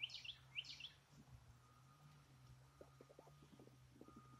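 A small songbird chirps a quick run of high notes in the first second, faint against a quiet outdoor background. Later come a few faint short ticks.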